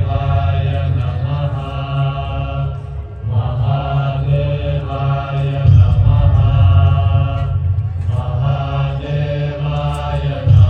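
Chanted mantra sung in long held phrases over a deep steady drone, as the soundtrack of a light show, with short breaks between phrases about three seconds in and near eight seconds.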